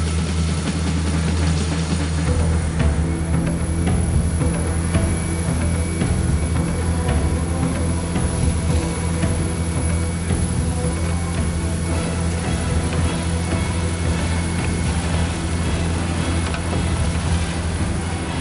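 A small fishing boat's engine running at a steady drone, with background music laid over it.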